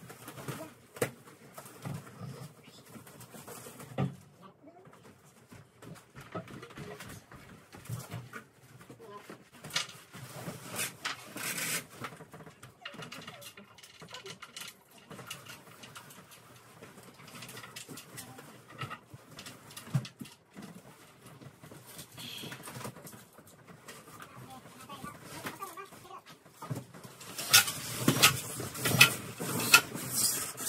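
Knocks and clatter of wooden table parts being handled and fitted together during assembly, then near the end a power drill runs in several short, loud bursts.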